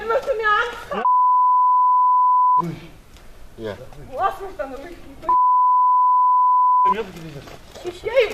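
Two censor bleeps, each a steady high beep about one and a half seconds long, the first about a second in and the second past the middle, blanking out the speech they cover; people speak between them.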